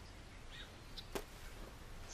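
A single brief sword swish a little over a second in, against a faint quiet background.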